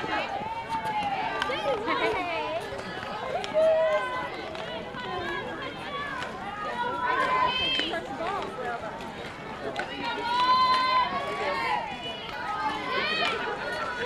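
High-pitched girls' voices shouting and cheering across a softball field, several overlapping calls, some long and drawn out, with no clear words.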